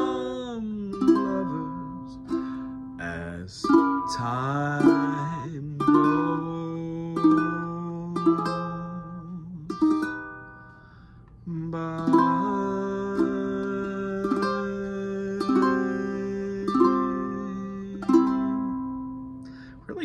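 Ukulele strumming slow chords, with a wavering sung note about four seconds in. The playing thins out briefly around the middle, then resumes, and a last chord rings out near the end.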